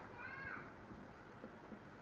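A faint, brief high-pitched sound that rises and then falls in pitch, just after the start, then only faint room tone.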